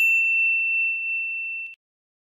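A single bright notification-bell 'ding' sound effect: one high ringing tone that fades slowly and then cuts off suddenly shortly before the end.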